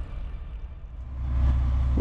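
Low, steady drone of a Cat Next Generation medium wheel loader's diesel engine running, heard from inside the cab. It rises about a second in as the tail of an electronic music intro fades out.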